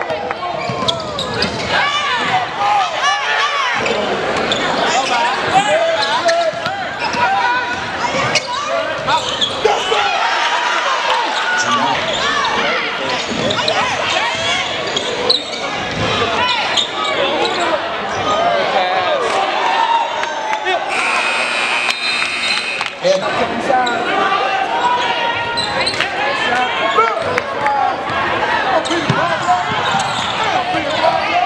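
Crowd voices and shouting echoing through a gymnasium, with a basketball bouncing on the hardwood floor. A steady buzzing tone sounds for about two seconds, about two-thirds of the way through.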